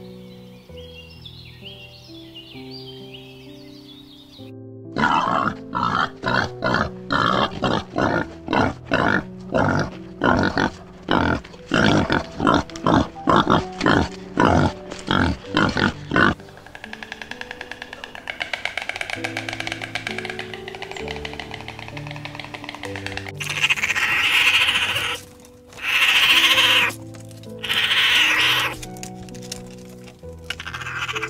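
Soft piano music, with pigs grunting over it in a quick run of short calls, about two a second, through the middle of the passage. Several louder, longer animal cries come near the end.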